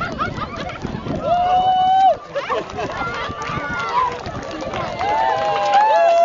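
A crowd of spectators shouting and cheering, several voices over one another, with long drawn-out high calls about a second in and again near the end.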